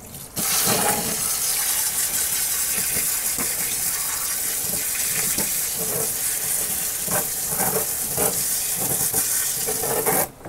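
A handheld sink spray nozzle on its jet setting, turned down a little, blasting water onto a plant's root ball to wash sphagnum moss out of the roots. It makes a steady rush of water that starts about half a second in.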